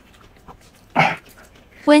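One short dog bark about a second in, then a woman's voice starts speaking near the end.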